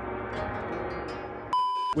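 A held musical chord, then about one and a half seconds in a short, steady, high-pitched electronic beep, like a test-tone or censor bleep, lasting under half a second and cutting off abruptly.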